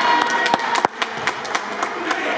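Basketball game noise on a hardwood gym court: a run of sharp knocks and taps from the ball and players' feet, with a brief high tone near the start and one louder knock just before the middle.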